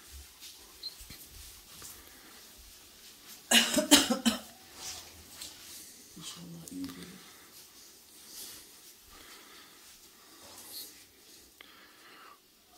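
A quick bout of coughing, several harsh coughs close together about three and a half seconds in, in a quiet room.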